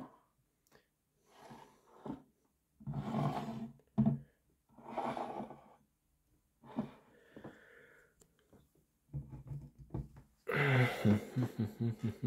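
A man's breathing and wordless voice sounds in about six short bursts with quiet gaps between them, the last and loudest near the end.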